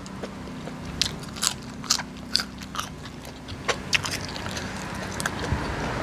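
Raw long beans being snapped by hand and bitten: a dozen or so sharp, crisp cracks and crunches at irregular intervals, with chewing in between.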